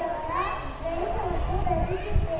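A young girl's voice amplified through a microphone and PA, with a low rumble underneath.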